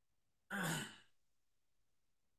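A man's short sigh: one audible voiced exhale about half a second in, lasting about half a second and falling in pitch as it fades.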